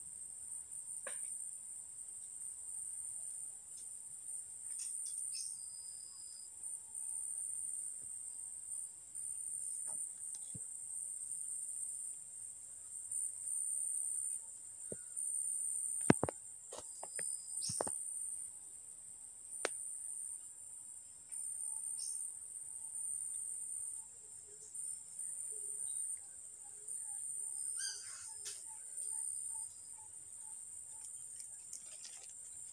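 Insects trilling in a steady, high-pitched drone, with a few sharp clicks around the middle and brief chirps near the end.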